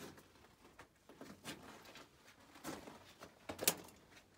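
Faint scattered scuffs and knocks of someone moving over the rocky floor of a mine tunnel, with a sharper knock about three and a half seconds in.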